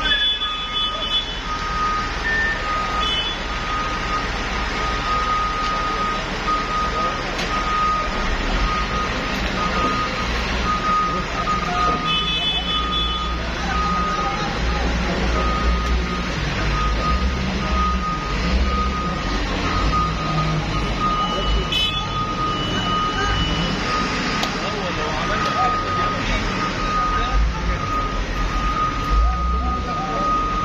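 Heavy machinery working rubble: a front loader's engine running with its reversing alarm beeping steadily in one tone, over crowd voices. The engine rumble grows heavier after the first several seconds.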